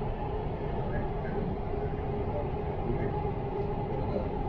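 Dubai Metro train running through an underground tunnel, heard from inside the carriage: a steady rumble with a constant hum under it.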